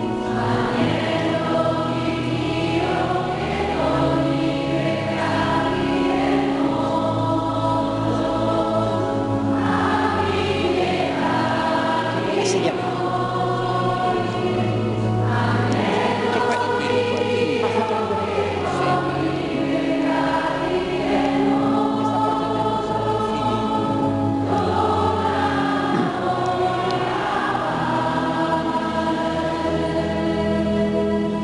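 Church choir singing a communion hymn over long, held accompaniment notes.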